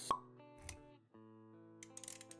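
A short sharp pop sound effect near the start, then a soft low thud, over background music with held notes that drops out briefly about a second in and comes back.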